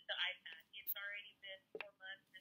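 A woman's voice speaking over a phone line, thin-sounding with little bass or treble. A sharp click near the end.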